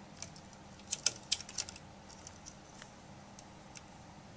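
Light clicks and ticks from hands handling insulated wires against a plastic enclosure lid: a quick run of about half a dozen sharp clicks around a second in, then a few scattered fainter ticks.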